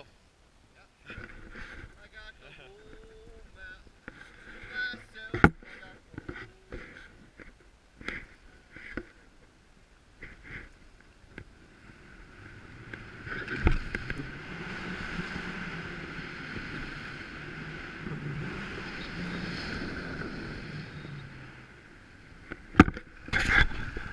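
Skis running over groomed corduroy snow: a steady hiss that starts about halfway through and lasts about ten seconds. Before it come scattered knocks and clicks from standing about on skis with poles, including one sharp knock about five seconds in.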